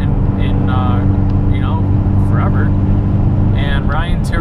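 Ford Focus ST cruising at steady speed, heard from inside the cabin: a constant low engine and road drone that holds one pitch. A man's voice speaks in snatches over it.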